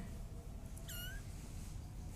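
Young kitten giving one short, high-pitched mew about a second in.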